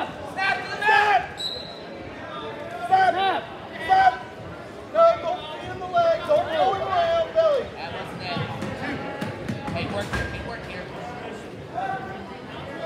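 Shouting voices echoing in a gymnasium during a wrestling bout, loud calls coming in bursts for the first several seconds. In the quieter last few seconds come a few dull low thumps.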